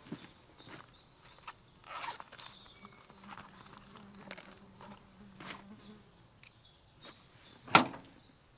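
Scattered rustles and small clicks of a cloth bag being handled, then one sharp knock just before the end as hands meet the wrecked car's metal body. Faint high chirps sound behind.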